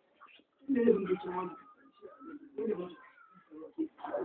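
A man's voice in short, broken low phrases, with a few faint, thin high chirps between them.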